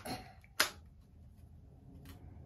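A single sharp plastic click about half a second in, from a clear plastic foot-measuring gauge being handled at the toe end, with a brief rustle just before it.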